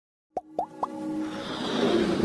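Logo-intro sound design: three quick pops, each gliding upward and each higher than the last, then a swelling rise that grows louder under the start of the intro music.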